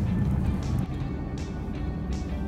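Music with a steady beat and heavy bass, over the hum of a car driving.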